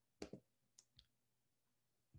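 Computer mouse double-clicking, a quick pair of sharp clicks a quarter second in, then two fainter single clicks about half a second later, with near silence around them.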